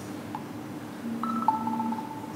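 Smartphone notification chime for an incoming WhatsApp message: two short electronic notes, a higher one and then a lower one held briefly, about a second in.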